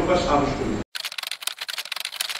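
A man speaking into a microphone is cut off just under a second in. Then comes a rapid run of keyboard-typing clicks, a sound effect for text being typed into a search bar.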